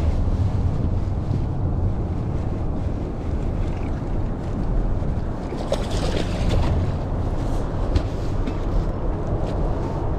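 Wind buffeting the microphone as a steady low rumble, with choppy water lapping against a bass boat's hull and a few small knocks.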